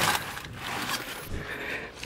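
Rustling and scraping of a mesh bag of inflated balloons being handled close to the microphone, loudest at the start and then quieter.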